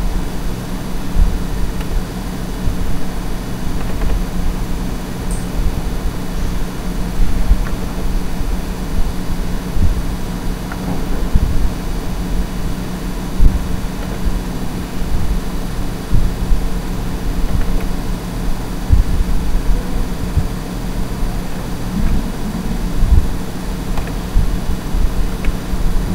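A steady low machine hum with an uneven rumble beneath it.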